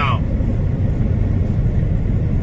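Steady low rumble of engine and road noise inside the cab of a truck travelling at highway speed.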